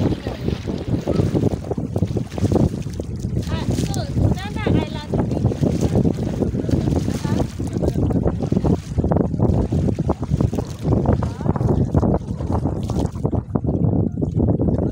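Wind buffeting the microphone on a small motorboat underway, over the steady run of the boat's motor and water rushing along the hull.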